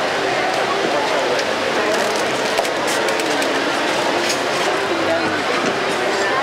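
Steady babble of many people talking at once, their voices overlapping so that no single speaker stands out.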